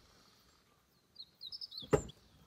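A quick run of about six high bird chirps, then a single sharp click just before the end.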